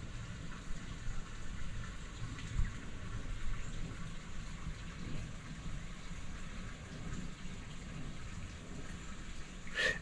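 Faint, steady outdoor background noise: an even hiss with a low rumble beneath it and no distinct events.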